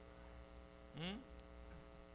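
Steady low electrical mains hum under a pause in speech, with a short rising 'hmm' from a man's voice about a second in.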